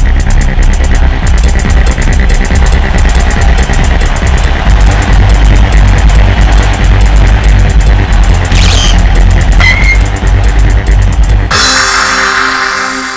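Electronic TV-show opening theme music with a heavy bass and a fast, even ticking beat, ending in a bright crash-like swell near the end.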